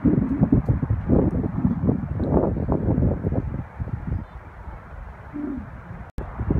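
Wind buffeting the phone's microphone in gusts: a low, uneven rumble that eases off about two-thirds of the way through.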